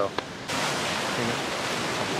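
Ocean surf and wind: a steady rushing noise that starts abruptly about half a second in.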